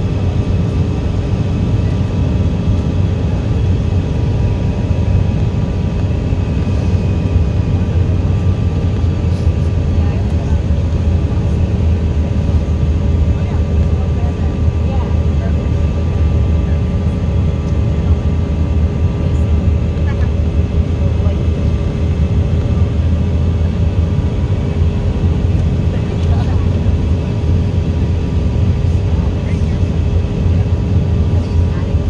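Steady cabin noise inside an airliner in flight: a deep, even drone of engines and airflow with a few faint steady hums above it.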